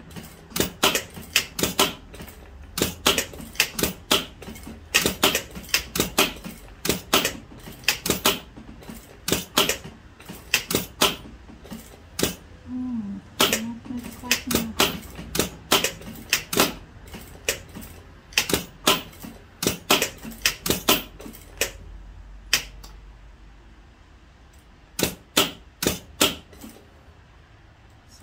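Straight-stitch sewing machine stitching slowly in short runs along a buttonhole edge: sharp clicks a few a second, in bunches with short pauses, over a low motor hum. The clicking stops for a few seconds near the end, then starts again.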